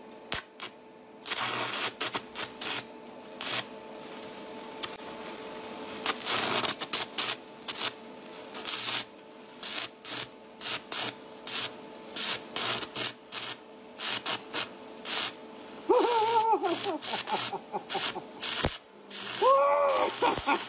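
Stick-welder arc struck with a sparkler as the electrode, crackling and sputtering irregularly, over a steady hum. A person laughs near the end.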